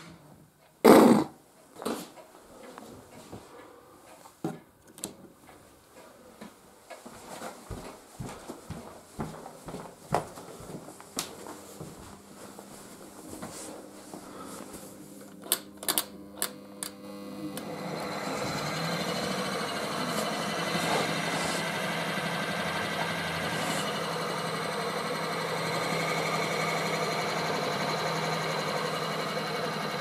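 Clicks and knocks of test leads and bench power-supply switches being handled, one sharp knock about a second in. A little past halfway a Ford Model A generator with a hand-rewound armature, powered as a motor, spins up and runs with a steady whir and hum, a sign that the new armature windings are intact.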